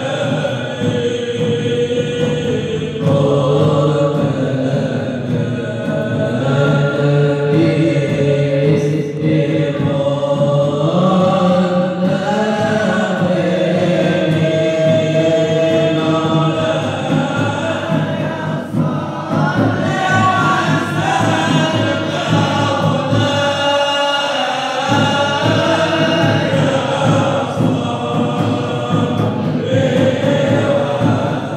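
A group of voices singing an Arabic Islamic devotional chant (sholawat) as music, continuous and loud.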